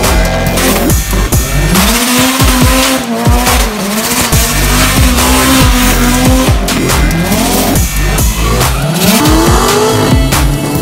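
Car engines revving hard as they accelerate, rising in pitch twice, with tire squeal from a car spinning its wheels, under music with a driving beat.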